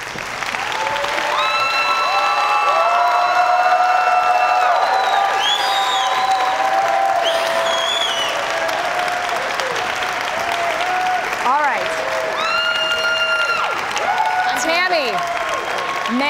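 Studio audience applauding, building over the first few seconds and then holding steady, with shouts and whoops of cheering over the clapping.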